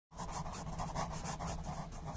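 Pen-scratching sound effect: a quick, rhythmic scratching, as of a pen writing fast across paper.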